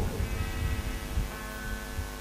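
A steady drone of several held tones over a low, uneven rumble, with one higher tone coming in about halfway through.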